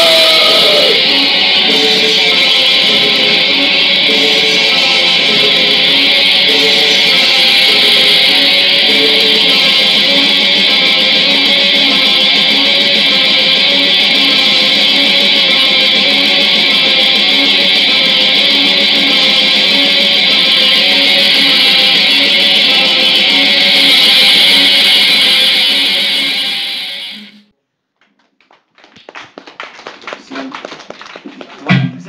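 Black metal band playing live: heavily distorted electric guitars in a dense, steady wall of sound over a repeating riff. The song cuts off about 27 seconds in, leaving a brief silence.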